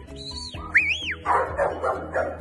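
Working sheepdog giving two high yelps that rise and fall in pitch, then a bark, on the command to speak.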